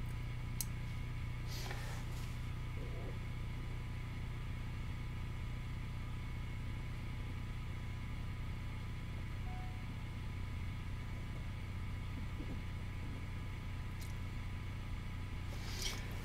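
Steady low hum of room tone with a faint thin tone above it, broken by a single soft click near the start and another near the end.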